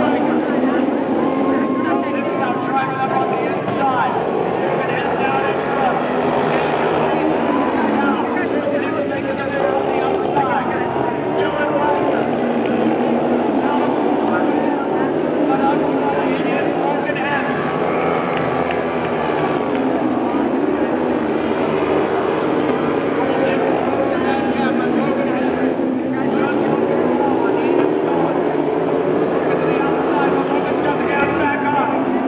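Speedway motorcycles racing on a dirt oval, several engines running at once with their pitch rising and falling as the riders throttle on and off.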